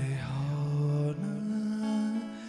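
A man singing long, held wordless notes into a microphone, stepping up to a higher note about a second in, over an acoustic guitar in a live performance.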